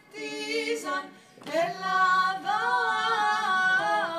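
Women's vocal ensemble singing a cappella in several parts. After a short break about a second in, the voices slide up into a new chord and hold it.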